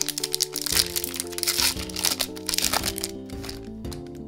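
Foil trading-card booster pack wrapper being torn open, crinkling and crackling for about three seconds, over background music.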